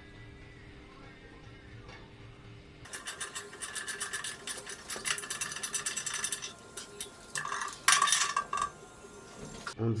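Metal parts clinking, rattling and scraping as a welded steel bracket and electrics box are worked into a motorcycle frame's rubber-mounted bushings. The rattling comes in quick irregular bursts from about three seconds in, is loudest near the end, and stops abruptly.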